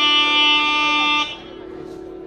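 Nadaswaram playing a long held reedy note that stops about a second and a quarter in. A steady drone continues underneath.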